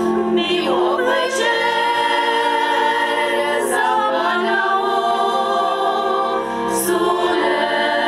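Women's folk choir singing a Moravian Podluží folk song, holding long notes in phrases of about three seconds.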